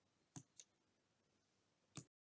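Near silence broken by three faint short clicks: two close together about half a second in, and one more at the end.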